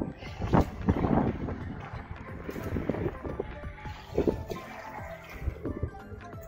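Background music, with a few irregular knocks and splashes from a dip net being worked in a tank of water to catch a fish.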